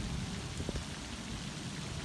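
Steady hiss of background noise, with one faint click about three-quarters of a second in.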